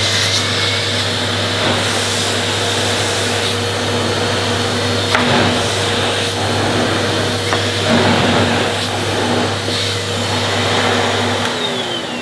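Numatic Henry Pet cylinder vacuum cleaner running steadily as its floor head is pushed over carpet, its motor still winding up in the first second. It is switched off near the end and its motor winds down.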